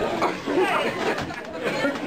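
Speech only: several people chatting at once.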